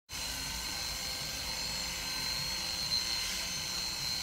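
Electric hair clippers running steadily during a haircut: an even whirring with a thin high whine.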